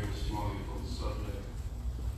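A man's voice speaking into a pulpit microphone for about the first second, with a steady low rumble underneath.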